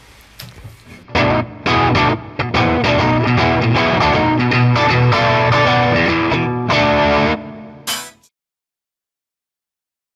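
Stratocaster-style electric guitar played through a Cornford amp: a dense, loud run of notes starts about a second in and goes on for about six seconds. A short last flourish follows, and the sound cuts off suddenly about eight seconds in.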